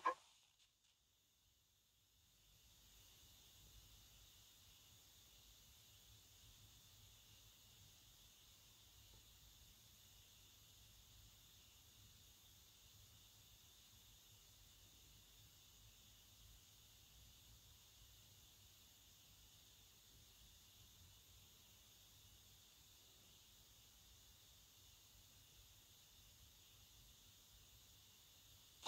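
Near silence: only a faint steady hiss.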